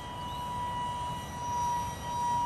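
Small electric ducted fan (a 30 mm Nitrocharged Pulse EDF) on a micro depron RC jet model in flight, giving a steady high whine that grows louder and slightly lower in pitch near the end.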